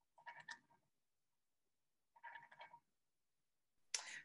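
Near silence, broken by two faint sounds about half a second long, the second about two seconds after the first.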